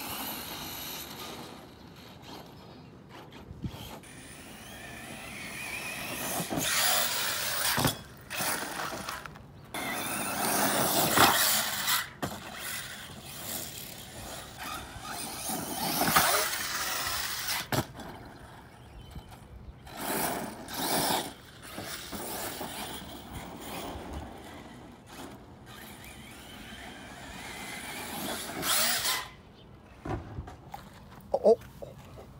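Battery-powered radio-controlled off-road car driving on dirt, its electric motor whining up in repeated bursts of throttle, each swell rising and then cutting off sharply, with short knocks in between.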